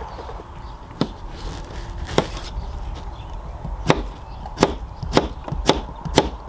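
Chef's knife slicing through a zucchini and striking a plastic cutting board. There are two separate chops, then a steady run of about two cuts a second in the second half.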